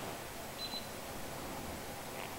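Quiet steady hiss of the camera's own recording noise, with one brief faint high-pitched tone about half a second in.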